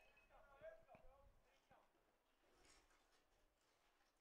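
Near silence, with faint distant voices talking in the first second and a half, then only faint background hiss.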